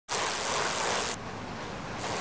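Road bicycle ridden at speed: a steady rush of wind and road noise. About a second in it drops suddenly to a quieter, duller hiss.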